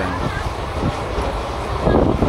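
Train running on the track: a steady low rumble of wheels on rail, with a faint voice near the start.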